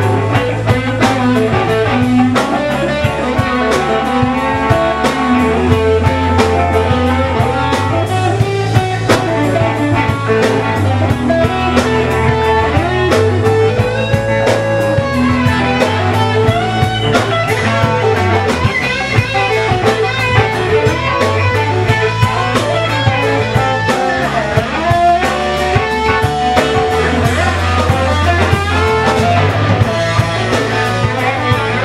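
Live blues-rock band playing an instrumental passage: electric guitar lead lines with bent notes over bass guitar and drum kit.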